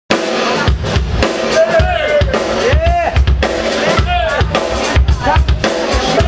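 Live blues-rock band playing. A Stratocaster-style electric guitar plays lead phrases with notes bent up and back down about once a second, over a Tama drum kit keeping a steady beat with kick and snare.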